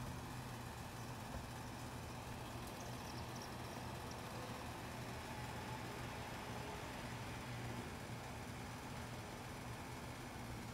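Faint, steady low hum of a distant motor over an even background hiss.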